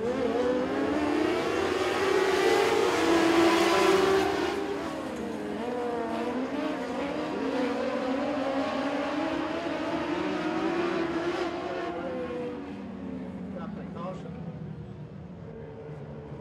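A pack of Mod Lite dirt-track race cars running around the oval, several engines rising and falling in pitch together. The sound is loudest a few seconds in as the pack comes nearest, then eases off toward the end.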